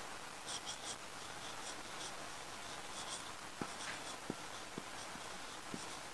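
Felt-tip marker squeaking on a whiteboard in short strokes as handwriting is written, with a few light taps in the second half.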